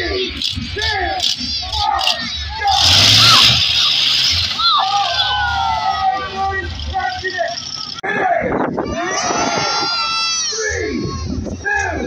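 Voices talking over outdoor background noise. About three seconds in, a loud rushing noise with a low rumble underneath rises and lasts a few seconds. Near eight seconds the sound breaks off abruptly and the voices continue.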